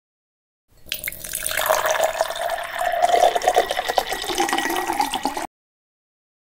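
Liquid pouring into a glass, the pitch slowly rising as it fills. It starts shortly after the beginning and cuts off suddenly about five and a half seconds in.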